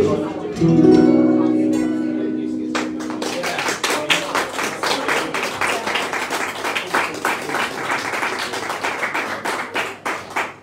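A final strummed chord on an acoustic guitar rings out and fades over the first few seconds. Then, about three seconds in, a small audience starts applauding and keeps clapping to the end.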